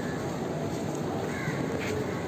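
A few short bird calls over a steady background of outdoor noise in a busy paved courtyard.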